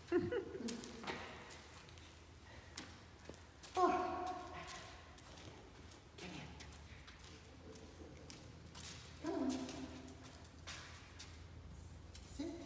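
A few short spoken words every few seconds, likely handler cues to a dog, with light footsteps on the floor and a steady low hum.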